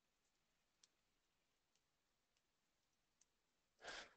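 Near silence: faint room tone with a few scattered faint clicks.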